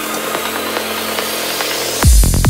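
Psytrance build-up: the kick drum and bass drop out, leaving a hissing noise sweep over held synth notes, with a thin tone rising slowly in pitch.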